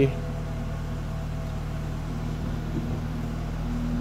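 Steady low hum of a BMW 428i's four-cylinder turbo petrol engine idling, heard from inside the open cabin, with a faint steady tone that stops about halfway through.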